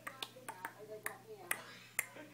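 A string of sharp, irregular clicks, several in two seconds, over faint background voices.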